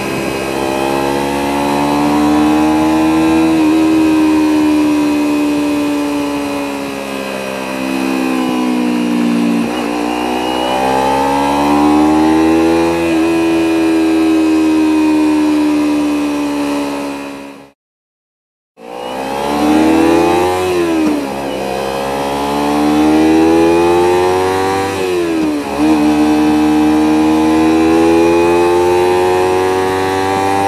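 Motorcycle engine under way, its pitch climbing as it accelerates and falling as it backs off through a series of bends, with a few quick throttle changes. The sound drops out completely for about a second a little past halfway.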